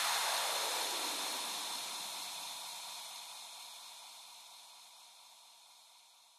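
The tail end of an electronic dance track: a hissing wash of white noise, with no beat or bass, fading steadily out to near silence.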